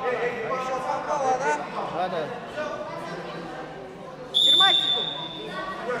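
Referee's whistle blown once, a single shrill blast of about a second starting about four seconds in, signalling the wrestlers to resume. Crowd and coaches' voices and shouts run underneath.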